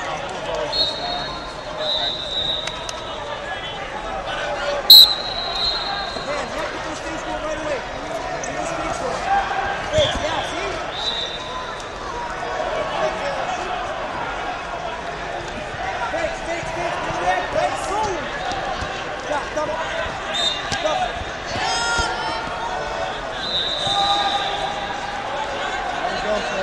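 Crowd chatter in a large gym, with a sharp, loud referee's whistle blast about five seconds in, followed by a held high tone, which starts the bout. Other short whistles sound from time to time.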